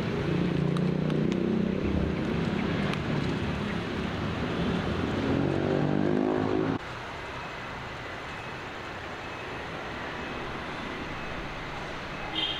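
An engine's low drone that rises in pitch and then cuts off suddenly about seven seconds in, leaving steady background noise.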